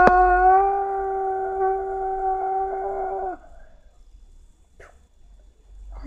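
A voice howling one long, steady 'oooo', rising in pitch as it begins and then held on a single note for about three seconds before it stops; a sharp click at the very start.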